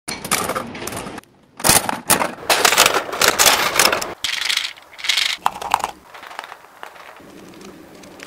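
Gachapon capsule-toy vending machine being worked: a run of metallic clicking and rattling as its coin handle is turned. It comes in several bursts, with a brief pause after about a second and quieter sound in the last two seconds.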